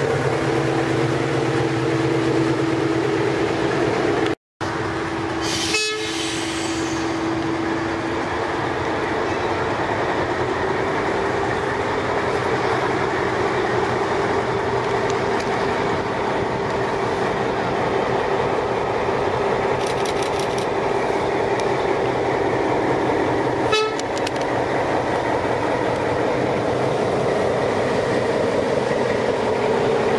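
NS 2200-class diesel-electric locomotive running steadily as it hauls a train of carriages past, its engine note shifting up slightly as it gets under way, with the carriages rolling along the track.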